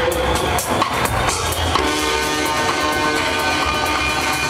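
Minimal techno played loud over a club sound system from a DJ set, with a steady kick drum. About two seconds in, a held synth chord comes in.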